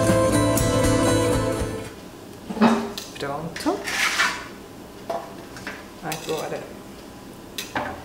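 Background music that stops about two seconds in, followed by a non-stick metal baking pan being set down and knocking and scraping on a granite countertop, with a few more light clatters as the dough slices are handled.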